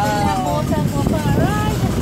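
A person's voice over the low, steady rumble of a car driving.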